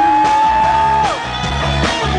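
A rock band playing live through a PA, recorded loud from the audience. There is a strong held note that slides up at the start, holds for about a second, then drops away as the bass and drums carry on.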